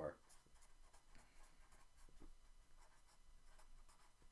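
A black marker writing on paper: faint short scratching strokes as the word "Current" and a number are written out.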